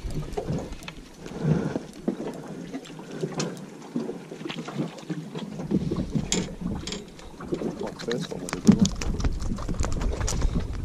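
Wind buffeting an action-camera microphone on a small boat, with water moving against the hull. Scattered clicks and knocks from handling the fishing rod, reel and line grow thicker a few seconds in.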